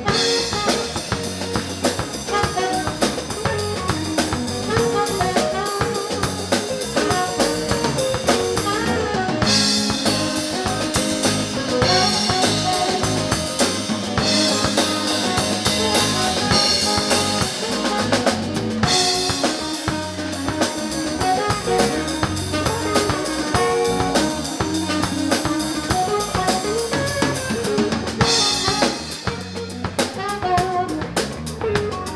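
Live band playing: a drum kit keeps a steady beat with snare, bass drum and cymbals under electric bass, electric guitar and saxophone. The cymbals grow brighter and louder for a long stretch in the middle and again near the end.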